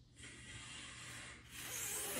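A person blowing air hard through the teeth and tongue in an F-like hiss, trying for a fingerless whistle; no whistle tone comes through. The hiss starts a moment in and gets louder in the second half.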